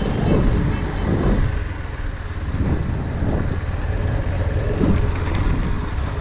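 Suzuki GD 110S single-cylinder motorcycle running steadily while riding along a dirt track, with a steady low rumble of engine, tyres and wind.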